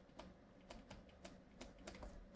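Faint, irregular taps and scratches of a pen stylus on a tablet surface while handwriting, a few light clicks over a near-silent background.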